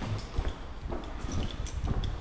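Footsteps of a person walking at about two steps a second, with a few faint high clinks in the second half.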